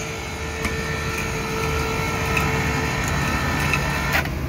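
110-volt electric hoist on a drum loader running steadily, raising the drum carriage along its rails on roller bearings: a steady mechanical hum, with a faint whine that stops about three seconds in.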